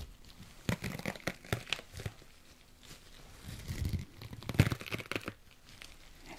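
Elastic bandage being unrolled and wrapped: irregular crackling, tearing-like rustles, in a cluster about a second in and again from about three and a half to five seconds.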